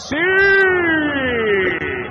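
Male sports commentator's long, drawn-out shout of "sííí", one held vowel that rises briefly and then slowly falls in pitch, calling a made three-pointer.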